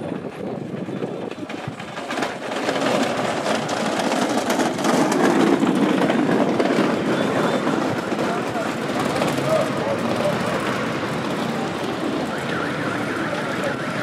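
Busy city street ambience: traffic mixed with a murmur of many people's voices, growing louder about two seconds in.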